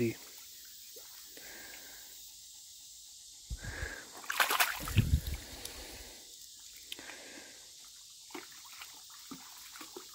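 Shallow creek water running with a steady faint hiss. About halfway through comes a short burst of splashing and sloshing as a hand dips into the water, rinsing a stone arrowhead.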